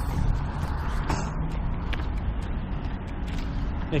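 Steady rumble of road traffic on a multi-lane road, with a few short clicks and rubs from a handheld camera being swung around.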